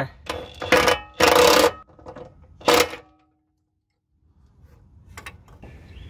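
A wrench tightening a Jeep WJ upper control arm bolt: several bursts of metallic clicking and ringing in the first three seconds, as the bolt is turned until it breaks. About three seconds in the sound cuts to dead silence for a second, followed by faint clicks.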